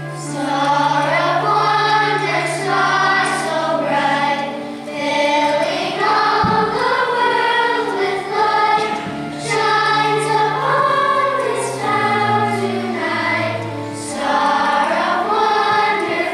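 Children's choir singing a song in phrases over an accompaniment of long-held low bass notes, which step down to a lower note about three-quarters of the way through.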